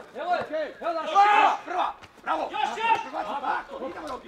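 Several voices shouting and calling out over one another on a youth football pitch, from the players and the coach, loudest a little after the first second.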